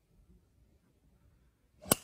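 Golf driver striking a teed ball: a brief swish of the swing rising into one sharp crack of impact near the end.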